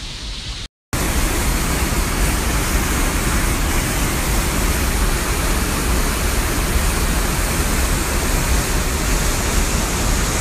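Trümmelbach Falls, a large waterfall in a rock gorge, rushing steadily and loudly. The sound cuts out briefly, then the water comes in at full strength about a second in.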